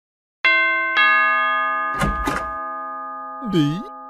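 Electronic doorbell chiming a two-note ding-dong, the second note lower, both notes ringing on and fading slowly. A short scuffling noise follows, then a brief voice-like sound bending in pitch near the end.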